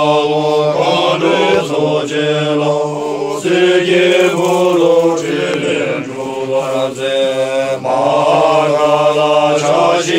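A group of men chanting together in unison, in long drawn-out phrases with short breaks between them.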